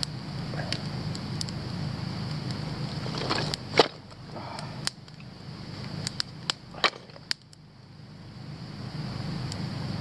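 A small kindling campfire just catching, with a few sharp, irregular crackles and knocks over a steady low hum. The loudest crack comes a little under four seconds in.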